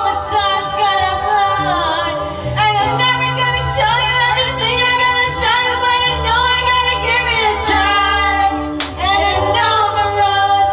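Several voices singing together in harmony: long held notes with vibrato, changing pitch every second or two.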